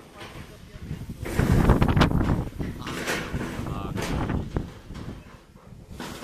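Indistinct background voices of people talking, loudest in the middle, with a couple of sharp clicks.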